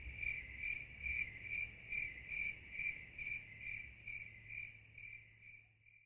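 Crickets chirping in a steady high trill that pulses about twice a second and fades out near the end: the stock 'crickets' effect, the comic cue for a joke that falls flat.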